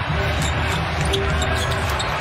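A basketball being dribbled on a hardwood court, with music playing in the arena behind it.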